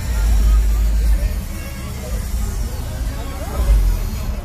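Loud, bass-heavy music played through a pickup truck's custom sound system, the deep bass swelling in the first second and again near the end, with voices over it.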